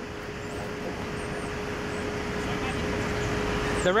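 Road traffic noise: a vehicle passing, its sound slowly growing louder until near the end, with a faint steady hum underneath.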